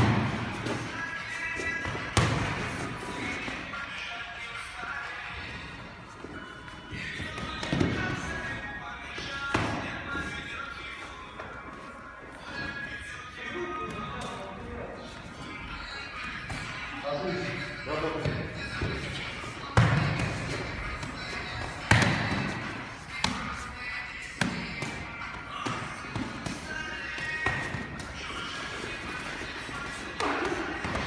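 Boxing gloves striking mitts, gloves and bodies in sparring, a scattering of sharp thuds, the loudest about two-thirds of the way through, over background music and voices.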